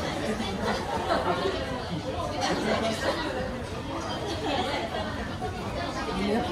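Indistinct background chatter of people talking in a café, with no clear words.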